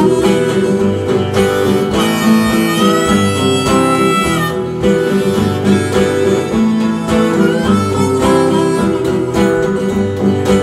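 Delta blues instrumental break: a harmonica played in a neck rack over a steady picked and strummed acoustic guitar, with one long held harmonica note from about two seconds in to about four and a half.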